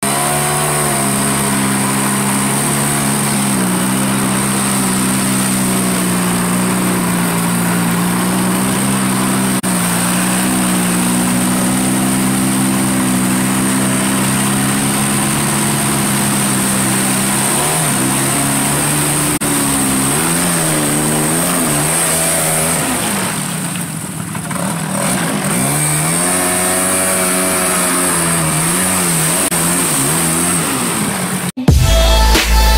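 Off-road vehicle engine running under way, holding a steady pitch at first, then revving up and down. It eases off briefly about three-quarters of the way through and then picks up again.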